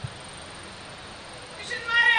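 A pause in a preacher's sermon with only a faint steady hiss from the PA and room, then near the end a high, sliding voice comes in as speaking resumes.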